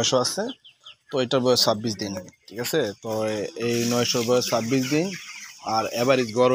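A flock of broiler chickens about 25 days old, clucking and calling in a poultry shed, with high chirping from many birds around the middle.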